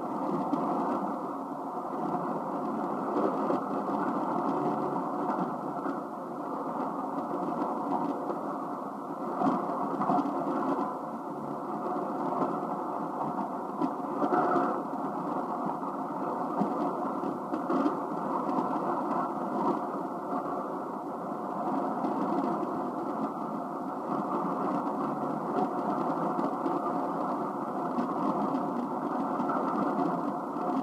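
HF-235 shortwave communications receiver tuned to 5985 kHz, giving a weak, noisy AM signal: a steady rush of static and fading with faint tones buried in it. It sounds narrow and muffled, with nothing in the treble.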